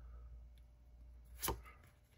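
Trading cards being handled quietly, with one sharp card click about one and a half seconds in as a card is moved from the back of the stack to the front.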